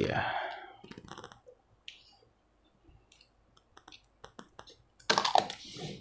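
Scattered light clicks and taps of a screwdriver and small tools being picked up and handled, then a louder rustling clatter about five seconds in.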